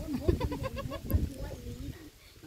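A woman's voice speaking in a high, lilting tone, with dull knocks of a knife chopping fish on a wooden block underneath.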